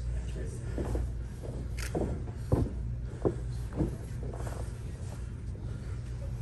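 Short, scattered calls from people's voices over a steady low hum of the hall.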